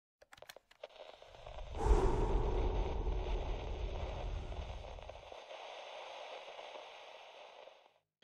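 Sound effect of an old television switching on: a few faint clicks, then a sudden low hum with static hiss about two seconds in. The hum cuts off a little past five seconds and the hiss fades away near the end.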